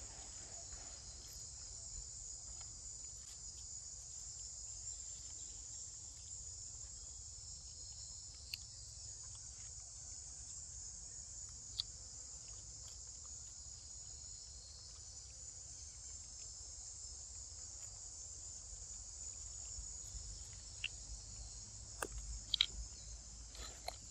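Steady, high-pitched insect chorus droning without a break, with two brief sharp clicks, the second about halfway through.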